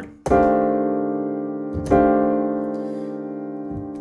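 Piano chords: a jazz voicing built on a tritone in the left hand, struck just after the start and again about two seconds in, each held and left to ring and fade.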